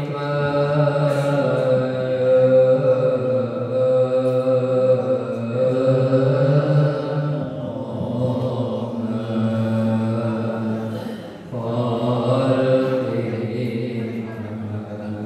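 Male voices chanting an Islamic devotional chant in Arabic, in long drawn-out melodic phrases, with a short break near the eleven-and-a-half-second mark.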